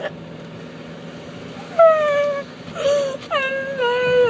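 A young woman crying in long, drawn-out wails, three in a row starting about two seconds in, each sliding slightly down in pitch. She is still groggy from the sedation given for her wisdom tooth extraction. A low, steady car-interior hum lies underneath.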